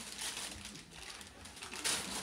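Gift-wrapping paper rustling and crinkling as a child unwraps a present, with one sharper crackle near the end.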